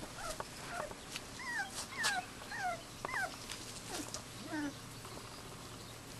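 Australian kelpie puppies whimpering: a run of short, high squeals that rise and fall, about two a second, dying away near the end.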